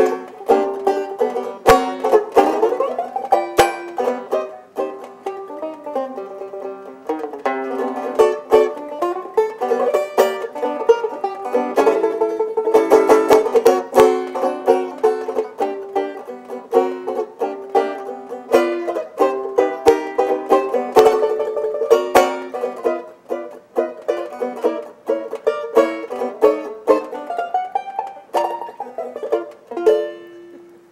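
Solo jazz banjo played with a pick, quick plucked melody and strummed chords, ending on a last chord near the end.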